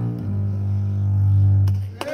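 Bowed double bass: a brief note, then one long low note that swells and then stops just before the end, the closing note of the piece.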